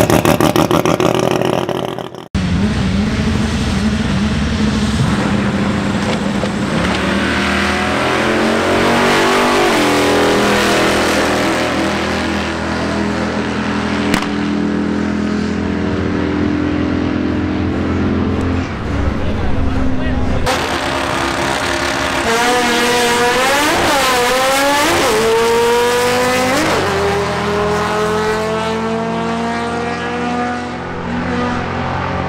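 Drag-racing cars running down the strip in pairs, their engines at full throttle with pitch climbing through the gears and dropping back at each shift. A loud opening sound cuts off abruptly about two seconds in, and the engine sound changes sharply again near two-thirds of the way through.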